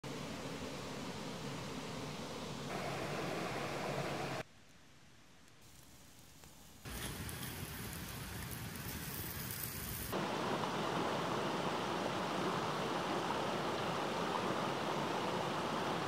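A string of short outdoor sounds with abrupt changes. It opens with a steady hiss, then a quieter stretch. About seven seconds in comes about three seconds of salmon sizzling on a fire-heated stone. For the last six seconds, the loudest part, a shallow stream rushes over rocks.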